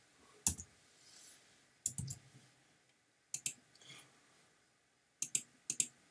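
Computer mouse clicking: sharp clicks in small clusters every second or two, several of them quick double clicks.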